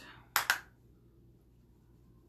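Two quick, sharp taps close together: a makeup brush tapped against the rim of a bronzer compact to knock off excess powder.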